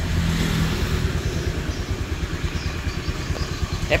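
First-generation Honda Vision scooter's fuel-injected single-cylinder engine idling, a steady low rumble.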